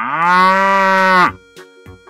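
A cow mooing: one long, steady call of about a second and a half that cuts off sharply, followed by light background music.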